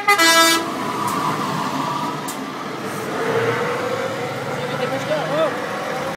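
Horn of a Scania T164L Torpedo truck sounding two short blasts at the start, then the truck's straight-piped V8 running as it pulls away, a steady rumble.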